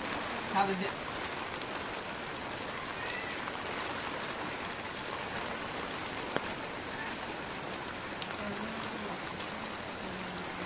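Steady rain, an even hiss with scattered drop taps throughout. There is a single sharp tap about six seconds in.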